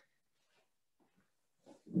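A pause in a man's talk: mostly near silence with a few faint breath or mouth sounds, then his speech resumes right at the end.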